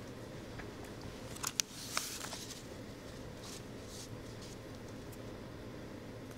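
Quiet room tone with a few faint clicks and a soft rustle about one and a half to two seconds in, then light rustling like papers being handled at a table.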